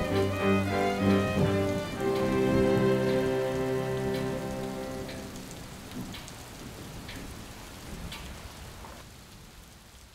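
Background string music ends on a held chord that dies away about halfway through, over a steady sound of falling rain with a few scattered drips. The rain fades gradually.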